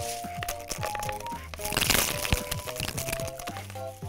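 Light background music, and about two seconds in a crunching, crackling burst lasting about a second as the pouch of gold coins is bitten at.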